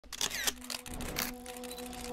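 Film-style intro sound effect: a run of irregular sharp clicks, like an old film reel or camera mechanism, over a steady low hum that sets in about half a second in.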